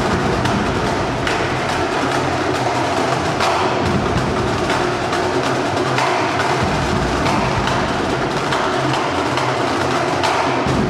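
Drum corps drummers playing a fast, continuous drum routine, a dense stream of sharp stick hits with no break.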